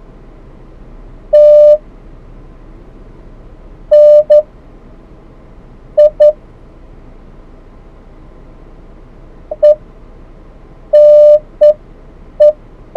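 The 2015 Jeep Cherokee's ParkSense parking-sensor chime beeps inside the cabin while the car reverses into the spot. It sounds as single, mid-pitched tones, some long and some short in quick pairs, and they come closer together near the end as the sensors pick up the car closing on an object.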